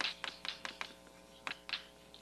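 Chalk writing on a blackboard: a quick run of sharp taps in the first second, then two more about a second and a half in, over a steady hum.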